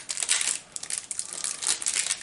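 Crinkling and crackling of packaging as a small prop is unwrapped by hand, loudest in the first half second and then in scattered bursts.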